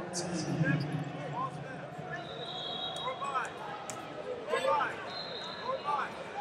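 Wrestling shoes squeaking on the mat in short chirps, in scattered clusters as the heavyweights push and shift their feet. A high steady tone sounds twice, in the middle and near the end.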